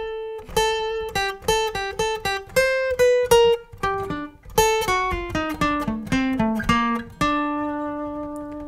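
Steel-string acoustic guitar playing a single-note lead phrase, each note picked separately, rising a little and then stepping down in pitch. It ends on one lower note held and left to ring.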